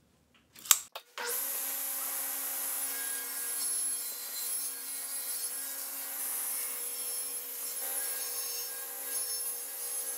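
Table saw starting abruptly about a second in and running steadily with a high whine, ripping a strip of plywood along the fence.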